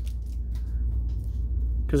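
Trading cards being handled: a few faint slides and clicks of the cards over a steady low hum.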